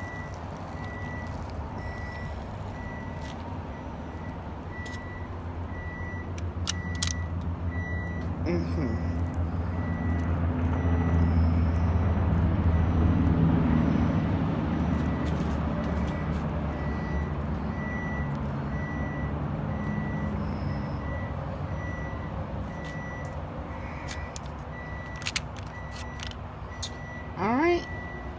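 A large vehicle's engine rumbling, growing louder toward the middle and then fading, with a high beep repeating at an even pace throughout like a reversing alarm.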